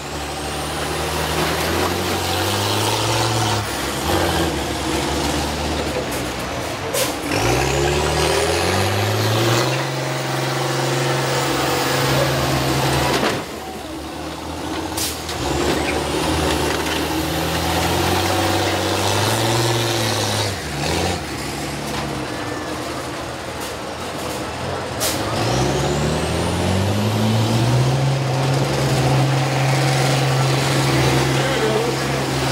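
Old school bus engines revving hard and running at high revs as the buses ram each other. The engine pitch climbs steeply as they accelerate, about a quarter of the way in and again near the end. A few sharp bangs punctuate the engine sound.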